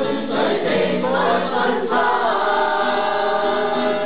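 A mixed group of men and women singing a Cantonese song together, with acoustic guitar accompaniment; a long held note in the second half.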